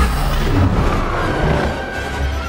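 Film soundtrack: dramatic score music mixed with a steady, deep rumble of spacecraft sound effects from a damaged starfighter trailing vapour.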